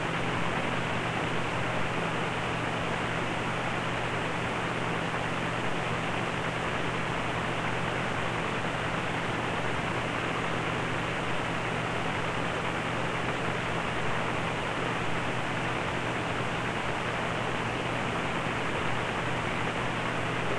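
Steady hiss-like background noise with a constant low hum underneath and no distinct events.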